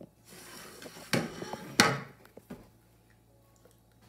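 A plate and fork handled on a wooden dining table: a short scrape, then two sharp knocks a little over a second in, about two-thirds of a second apart, and a lighter knock after them.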